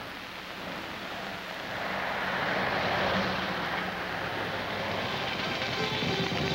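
An aircraft passing overhead: a broad rushing noise that swells over the first three seconds and stays loud.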